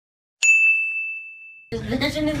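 A single bright ding: a bell-like tone struck about half a second in that rings down for about a second and then cuts off suddenly.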